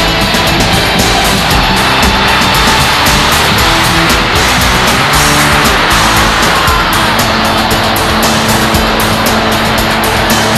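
Loud hard-rock backing music with distorted electric guitars and a steady drum beat.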